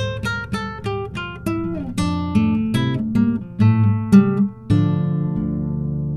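Instrumental guitar outro of a thrash metal song: a run of picked single notes, then a final chord struck about three-quarters of the way in and left ringing.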